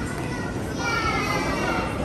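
Busy restaurant din of background voices. For about a second in the middle, a child's high-pitched voice cuts through.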